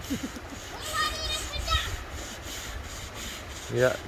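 Wind rumbling on the microphone, with a child's high voice calling out briefly about a second in.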